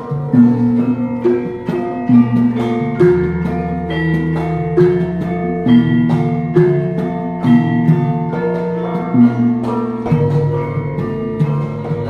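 Javanese gamelan playing: bronze metallophones struck in a steady pulse with ringing notes, over deep gong tones that hum underneath for several seconds.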